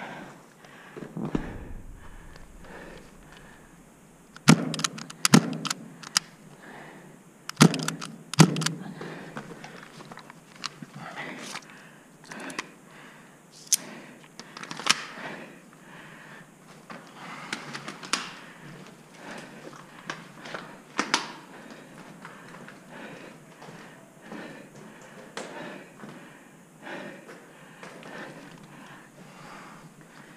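A series of sharp knocks and thunks with shuffling movement in a small, echoing room. The loudest are two pairs of knocks about four to nine seconds in, and smaller knocks follow every second or two.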